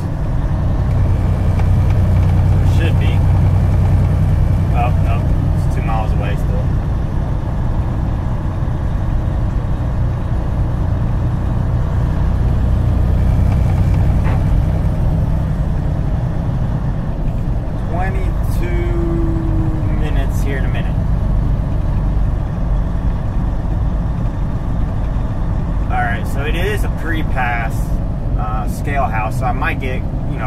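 Steady low drone of a semi truck's engine and tyres heard from inside the cab while cruising at highway speed. Brief snatches of speech come and go over it.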